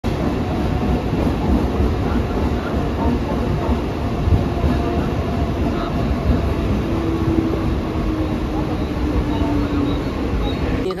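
Western Railway suburban electric local train running along the platform: a steady rumble of wheels and motors, with a low whine that drifts slightly down in pitch over the last three seconds.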